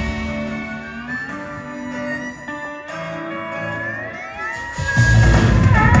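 Live band playing an instrumental passage between vocal lines: held notes with several rising sliding notes over them, quieter in the middle. The full band comes back in louder about five seconds in.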